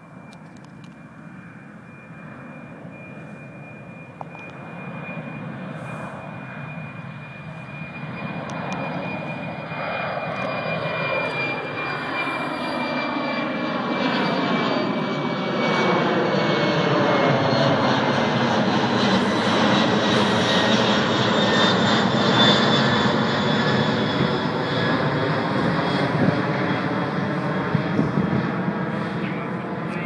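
Italian Air Force Boeing KC-767A's two turbofan engines at climb power as the jet flies in and passes overhead after a touch-and-go. The jet noise grows steadily louder through the first twenty seconds, and a high fan whine slowly falls in pitch.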